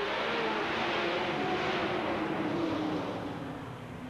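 A pack of full-fendered Sportsman stock cars accelerating together at the green-flag start, a dense, steady mass of engine noise from the whole field that eases slightly near the end.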